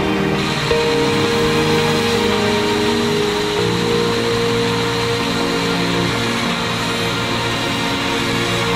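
Background music of slow, long held notes, changing chord a few times.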